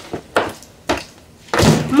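A handbag handled and dropped into a cardboard box: two light knocks in the first second, then a louder thud with a rustle near the end.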